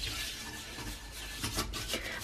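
Toilet brush scrubbing soda crystals around the inside of a ceramic toilet bowl: faint, irregular rubbing strokes.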